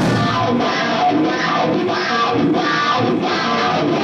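Live rock band playing loud: electric guitar, bass guitar, Hammond B3 organ and a drum kit with a steady beat of drum and cymbal hits.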